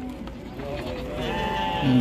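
A man's voice in a drawn-out, steady-pitched hesitation sound, held for about a second before he starts speaking.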